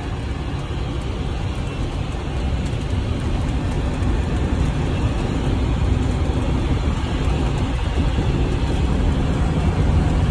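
Steady road and engine rumble of a moving vehicle heard from inside the cab, heaviest in the low end and growing slightly louder toward the end.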